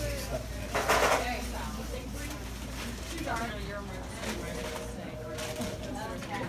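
Bakery shop room sound: background voices over a low steady hum, with a short loud burst of noise about a second in and a faint steady tone near the end.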